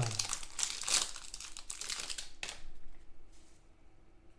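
Foil wrapper of a trading-card pack crinkling as it is torn open by hand, with a dense crackle for the first two seconds or so, then fading to light rustling as the cards are drawn out.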